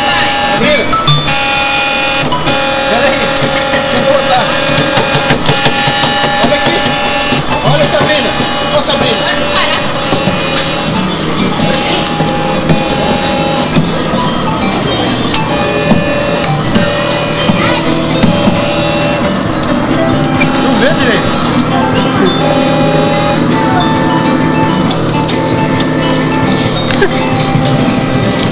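Electronic music from a coin-operated rocket kiddie ride: a simple melody of held notes that change every second or so.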